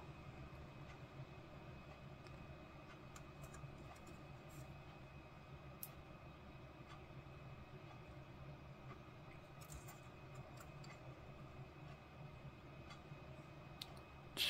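Near silence: faint room tone with a few scattered soft clicks of a plastic model-kit sprue being handled.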